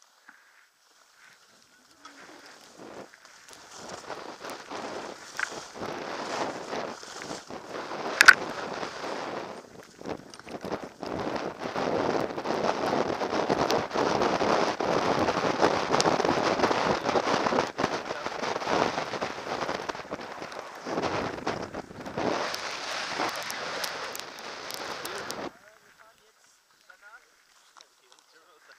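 Skis running over snow with wind rushing on a helmet-mounted camera: a scraping hiss that builds, is loudest in the middle, and stops abruptly a few seconds before the end as the skier halts. A single sharp click about eight seconds in.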